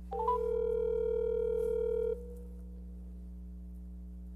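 A loud electronic tone lasting about two seconds. It opens with a quick rising chirp, holds one steady pitch, then cuts off suddenly. A constant electrical hum runs underneath.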